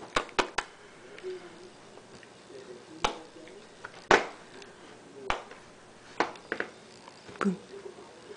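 Scattered sharp clicks and taps, about ten over several seconds and some in quick pairs, with faint, short soft vocal sounds from a baby in a high chair between them.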